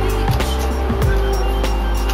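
Background music with a steady beat: a deep held bass, drum hits about twice a second and quick high ticks.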